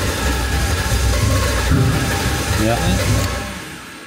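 A BMW E36's engine running, then fading and dying near the end as it runs out of fuel.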